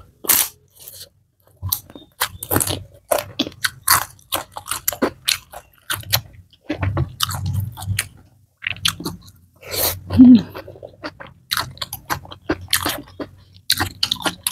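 A person chewing and crunching crisp food: a crisp flatbread, then fried rice with cucumber salad, eaten by hand in irregular crunchy bites and chews. The loudest bite comes about ten seconds in.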